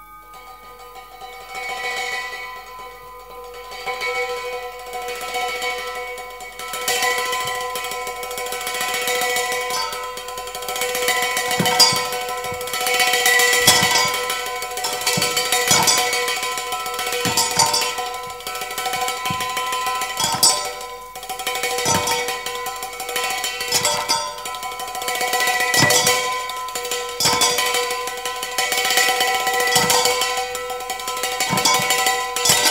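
Metal kitchen vessels played as percussion: a stick tapping and scraping inside a stainless steel cup, with metal bowls and cans ringing on in sustained pitches. The taps start sparse and become dense and louder after about seven seconds.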